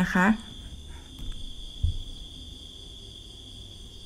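A brief spoken word at the start, then quiet background with a steady, faint, high-pitched whine that does not change. One soft low thump comes a little under two seconds in.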